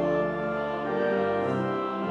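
Church pipe organ playing a hymn in held chords that change every half second or so.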